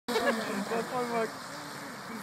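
A man speaking briefly in German, then a faint steady hum from a distant electric RC speedboat running at speed on the water.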